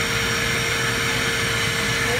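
Automated key-duplicating kiosk's machinery running: a steady whirring hum with one constant mid-pitched tone.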